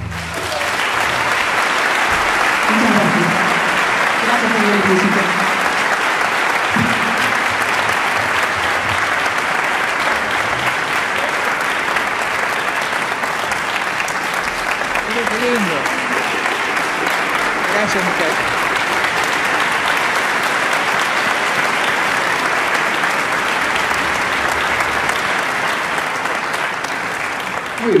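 Large theatre audience applauding steadily after a song ends, with a few voices calling out over the clapping.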